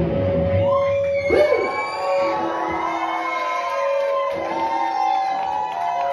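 A live rock band stops dead at the end of a song. An amplified electric guitar rings on in long held tones while the audience cheers and whoops.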